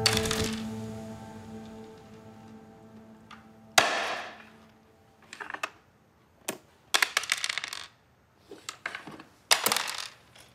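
Background music fades out over the first couple of seconds. Then backgammon checkers and dice clack on a wooden board: one sharp clack about four seconds in, followed by short runs of quick clicks.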